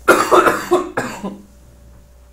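A person coughing loudly and close to the microphone: two coughs about a second apart, over by about a second and a half in.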